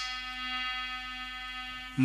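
A harmonium holding one steady note, its pitch unchanging, between spoken narration and the sung verse.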